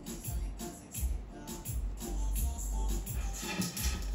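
Background music with a steady pulsing beat.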